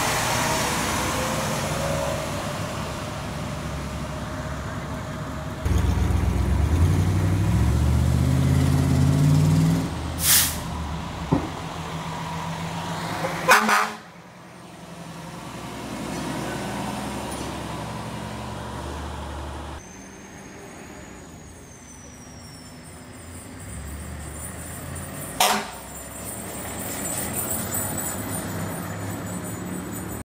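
Diesel fire trucks driving past one after another. About five seconds in, one truck's engine grows loud and climbs in pitch in steps through its gears, and short sharp hisses from the air brakes sound several times, the loudest about halfway through.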